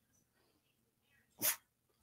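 Brief pause, quiet except for one short, sharp breath or sniff from a person about one and a half seconds in.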